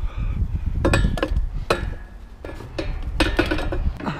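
A metal-framed chair clanking and knocking against the edges of a tight opening as it is pushed and jostled through, a string of sharp metallic knocks with short ringing over low rumbling bumps.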